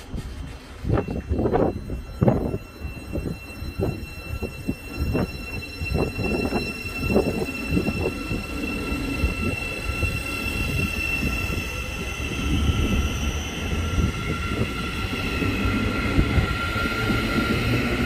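Thameslink Class 700 electric multiple unit moving off along a platform. A run of irregular clanks from the wheels over the track comes in the first eight seconds, then a steady electric motor whine builds as the train gathers pace.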